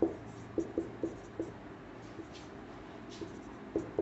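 Marker pen writing on a whiteboard: short, irregular taps and squeaks of the felt tip as the strokes are drawn. Several strokes come in the first second and a half, then a quieter stretch with a couple of faint squeaks, and more strokes near the end.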